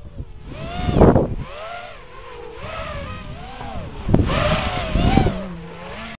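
Electric motors of a small FPV quadcopter flying nearby, a whine that keeps sliding up and down in pitch as the throttle changes. It swells loudest as it passes close, about a second in and again around four to five seconds, with a short sharp knock just after four seconds.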